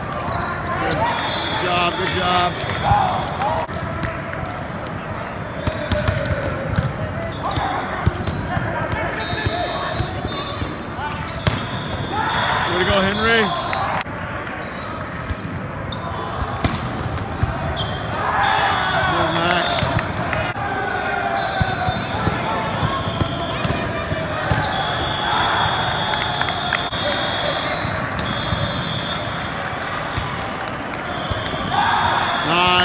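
Volleyballs being struck and bouncing on the court, a series of sharp smacks spread through the rallies, with players' shouts and background voices throughout. A high steady tone sounds several times, a second or two each.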